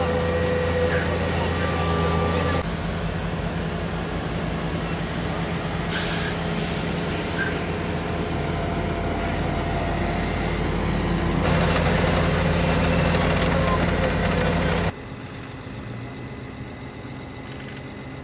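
Diesel engine of a Vögele asphalt paver running at a steady hum. The sound changes abruptly a few times and drops much quieter near the end.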